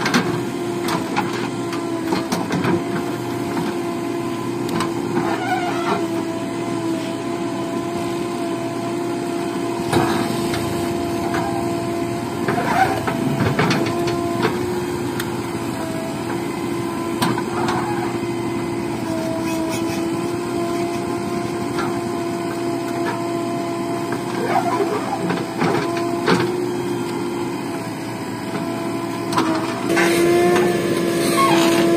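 JCB backhoe loader's diesel engine running steadily, its pitch dipping briefly a few times under load as the backhoe digs, with occasional short knocks from the bucket working soil and stones.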